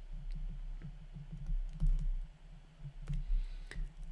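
Stylus tapping and scratching on a tablet surface while words are handwritten, making a series of light, irregular clicks over a steady low hum.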